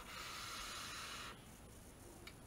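Long draw on an e-cigarette box mod with a dripping atomizer: a steady airy hiss of air pulled through the firing coil, stopping a little over a second in.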